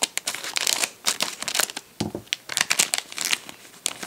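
Scissors snipping through a plastic toy blind bag, then the bag crinkling as hands pull it open, in a string of short, sharp crackles.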